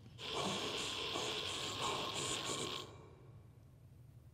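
Radiation dosimeters crackling very rapidly, their clicks run together into a dense static-like hiss, then cutting off suddenly about three seconds in. Clicking this fast is the sign of intense radiation.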